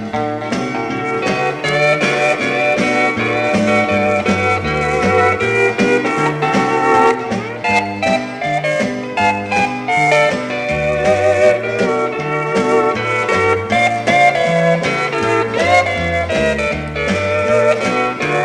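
Instrumental break of a mid-1960s country record. A lead guitar plays with bent notes over a bass line walking from note to note and a steady beat, with no vocals.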